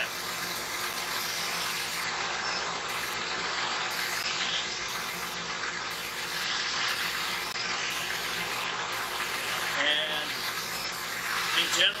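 Gamajet rotary impingement nozzle spraying a pressurised jet inside a clear plastic tank: a steady hiss and splash of liquid against the tank walls, swelling and easing every few seconds.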